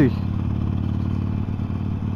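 Harley-Davidson Sportster 1200 Forty-Eight's air-cooled V-twin engine running steadily at a cruise of about 60 km/h, heard from the rider's seat.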